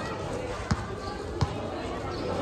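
Basketball dribbled on a court: two bounces about three-quarters of a second apart, over a background of voices.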